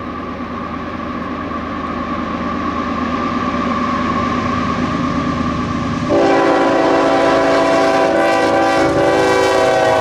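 Two Union Pacific GE Evolution-series (GEVO) diesel locomotives approach and pass under power, their engine and wheel noise growing louder. About six seconds in, the locomotive air horn sounds one long, loud blast as a horn salute. It holds for about four seconds and stops near the end.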